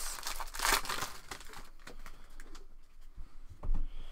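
Foil wrapper of a 2017 Panini Prizm football card pack crinkling and tearing as it is pulled open by hand, loudest in the first second and a half, then quieter rustling as the cards are handled. A short thump comes near the end.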